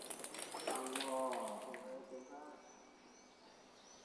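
Water running and splashing from a wall tap during ritual ablution washing, with a man's voice briefly in the middle. About halfway through the splashing stops and only a quiet background with a few faint high chirps remains.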